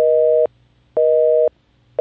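North American telephone busy signal: a two-tone beep repeating about once a second, each beep about half a second long with half-second gaps. Two full beeps are heard, and a third starts at the very end.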